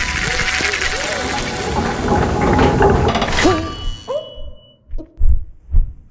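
Trailer soundtrack: music under a loud rushing sound effect that breaks off suddenly about three and a half seconds in, followed by a short held tone and two low thuds near the end.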